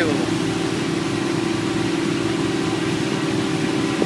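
Steady drone of an engine-driven pump running, with water gushing from its discharge hose and splashing into standing floodwater.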